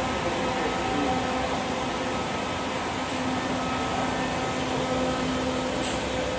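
Diesel engine of a Mercedes-Benz O500RS coach idling, a steady hum with a few held tones.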